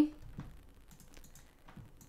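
Faint, scattered clicks of a computer keyboard and mouse over low room tone.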